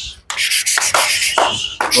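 Hooves of a tightly packed flock of sheep scuffing and shuffling on a gritty concrete yard: a dense, high-pitched scraping, with a few sharper scrapes about a second in and near the end.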